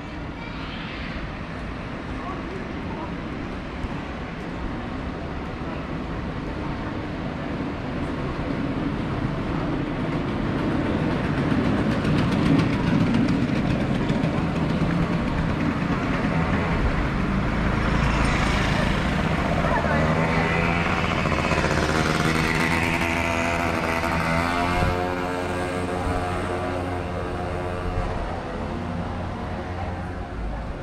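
Street ambience with a motor scooter's engine growing louder as it approaches and passes, then fading. Voices of passers-by run under it.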